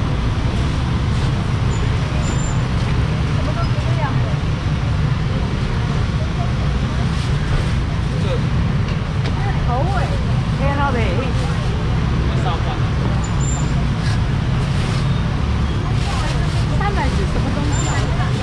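Busy market ambience: scattered voices and chatter over a steady low rumble.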